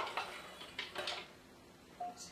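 A few light clinks and knocks as a metal measuring cup is tapped against a plastic food processor bowl and walnuts are tipped into it.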